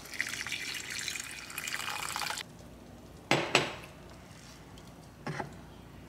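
Black coffee poured from a glass mason jar into a saucepan of hot cocoa: a steady splashing pour that cuts off suddenly about two and a half seconds in. Then two light knocks close together and another near the end.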